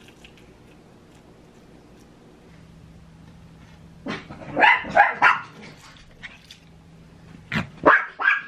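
Dogs barking at a squirrel outside: a quick run of loud barks about four seconds in, a couple of softer ones, and two more near the end.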